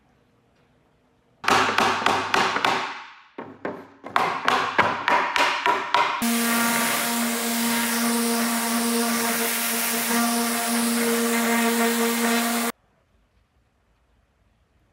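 A quick run of sharp knocks or taps, about four or five a second, followed by a random orbit sander with a dust-extraction hose attached running steadily while sanding a wooden panel. The sander stops abruptly near the end.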